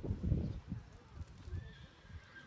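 Horse cantering on a sand arena: dull, low hoof thuds, loudest in the first half-second and fading after that.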